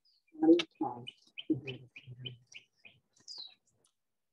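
A songbird chirping in a quick run of short high notes, about four a second, then one falling whistle near the end. Under it a man's low voice murmurs briefly, loudest about half a second in.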